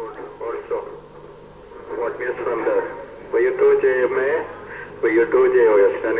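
A voice coming over a ham radio transceiver's speaker, thin and narrow-band, with a steady low hum underneath.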